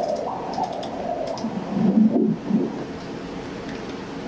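Pulsed-wave Doppler audio from an ultrasound scanner sampling the main renal artery at its origin from the aorta: a whooshing signal that swells and fades with each heartbeat, the sound of arterial blood flow.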